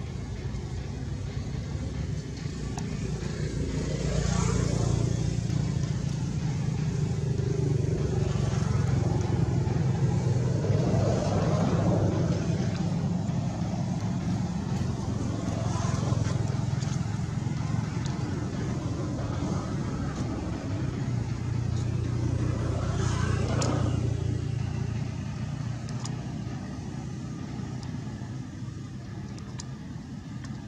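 Motor vehicle traffic: a steady low engine hum with several vehicles passing one after another, each swelling and fading, the busiest stretch running from a few seconds in until past two-thirds of the way through.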